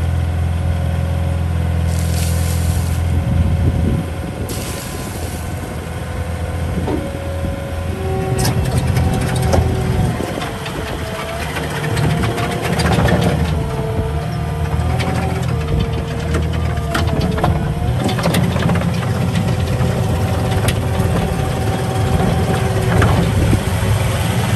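Caterpillar 236D skid steer loader's diesel engine running hard as the machine drives and works its bucket. A whine that shifts in pitch comes in about eight seconds in, with occasional knocks and rattles.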